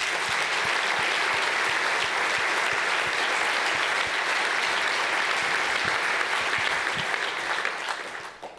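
Audience applauding, a steady dense clapping that dies away near the end.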